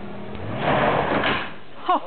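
A burst of scraping noise about a second long as an SUV pulls forward against a rope tied from its rear bumper to a tree, trying to bend the bent bumper back out. The engine runs steadily underneath.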